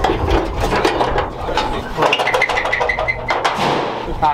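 Clattering knocks and rattles of tools and sheet metal as a pickup truck's hood is unbolted from its hinges and lifted off, with a brief run of high chirping pulses a little past the middle.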